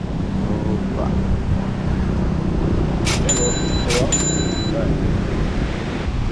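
Wind buffeting the microphone over the sound of surf. In the middle, two sharp strikes about a second apart, each with a brief ringing tone.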